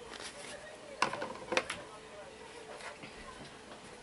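Indistinct voices in a room, with two sharp knocks or clicks about a second and a second and a half in.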